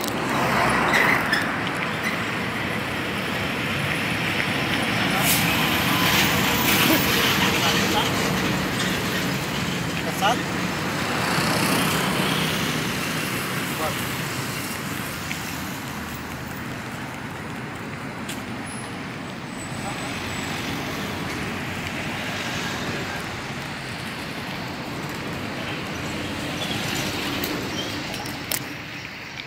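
Road traffic on a city avenue: a steady noise of passing cars, swelling louder as vehicles go by, twice in the first half.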